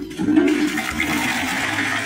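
A steady, loud rush of water-like noise, reaching from low to very high pitches.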